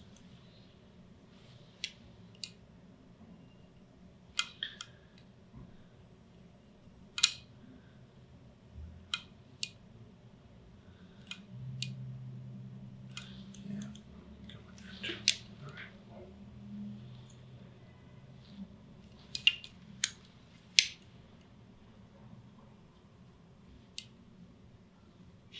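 A nervoscope being run along the upper spine on bare skin: scattered sharp clicks and small handling sounds from the instrument, about a dozen spread irregularly, with a low hum for a few seconds in the middle.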